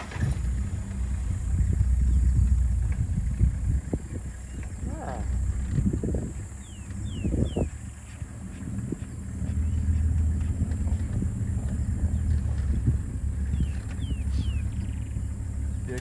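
Safari game-drive vehicle's engine running as the vehicle creeps forward, a steady low rumble that swells and eases with the throttle.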